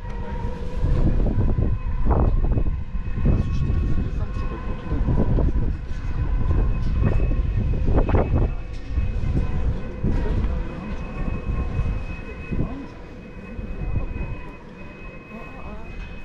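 Strong wind buffeting the microphone in gusts, with a steady hum of several held high tones underneath. The wind eases somewhat near the end.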